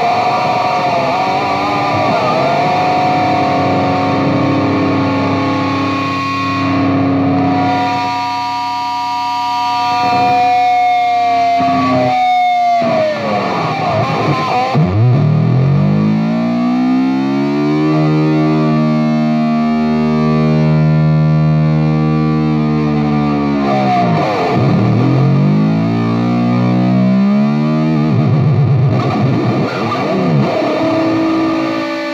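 Distorted electric guitar played through a Metal Zone pedal into an EVH 5150 amp: held, bent notes, then a low chord whose pitch swoops down and later rises back.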